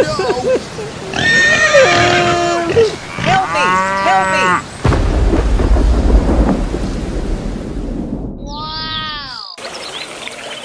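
Farm animal calls, several in turn, then from about five seconds in a low thunder rumble with rain. A short falling call is heard near the end.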